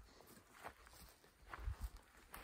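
Footsteps on dry grass: a few soft, irregular steps, with the heaviest thuds near the end.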